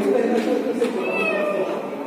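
Men's voices vocalising in long, wavering tones that glide up and down in pitch.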